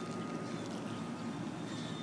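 Water trickling from small holes drilled in a 3/4-inch PVC drip-irrigation pipe into the soil of a tomato container, a steady even hiss with a faint thin high tone running through it.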